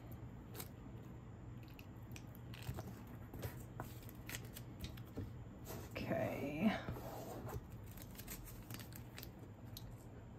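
Painter's tape being handled and pressed down onto a canvas panel: faint crinkling and rubbing with many small scattered clicks. A short murmured voice sound comes about six seconds in.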